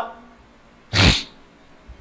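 A single short, breathy vocal burst from a man at a close microphone, about a second in, between pauses in his talk.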